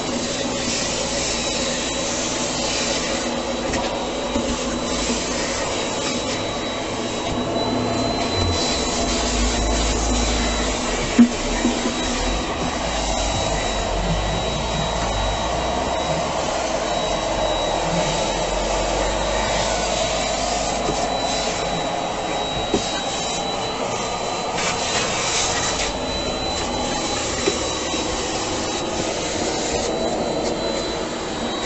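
Vacuum cleaner running steadily with a high motor whine as its hose and crevice nozzle suck up debris from the floor. There is one sharp knock about eleven seconds in and a couple of fainter knocks later.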